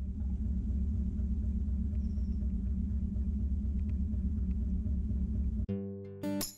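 A narrowboat's diesel engine running steadily while cruising: a continuous low rumble that cuts off suddenly near the end, where acoustic guitar music starts.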